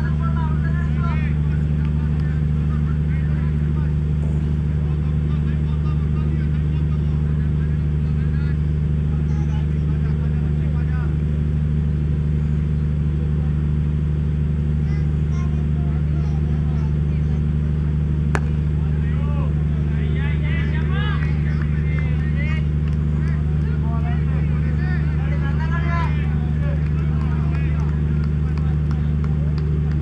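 A steady low mechanical hum, like an engine or generator running, with distant men's voices calling out now and then, most in the second half. A single sharp click comes about eighteen seconds in.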